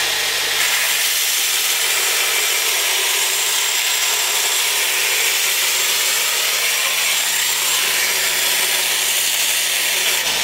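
A slow-running belt grinder with a coarse abrasive belt grinding the steel edge of a Hultafors axe head. It makes a steady grinding hiss over the hum of the grinder's motor, and the grinding gets brighter about half a second in.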